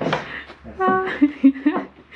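Old weathered wooden barn door being pushed shut: a scrape, then a short, steady creak. A brief human voice follows near the end.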